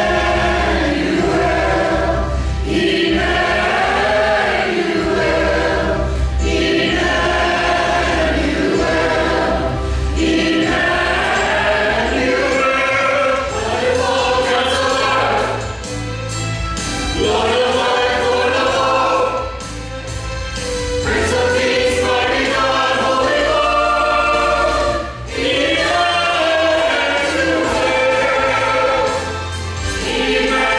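A mixed church choir singing in parts, with instrumental accompaniment carrying a steady low bass line; phrases are held and then break briefly between lines.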